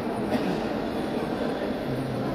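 Steady, dense background noise of a busy entrance hall, with faint voices in it and a single short knock about a third of a second in.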